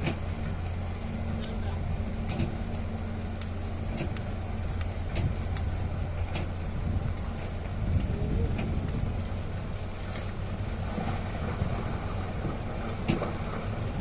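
A heavy diesel engine runs steadily at a low, even drone, with scattered faint clicks and knocks over it.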